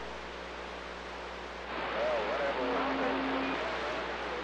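CB radio receiver static between transmissions. About two seconds in, the hiss rises and a faint, warbling voice of a distant skip station comes through it, with a brief steady tone underneath.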